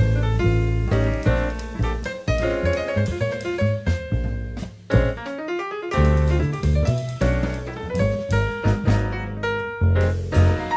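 Jazz piano trio playing live: grand piano over double bass and drum kit. About five seconds in, the bass and drums drop out briefly while the piano plays a quick rising run, then the full trio comes back in.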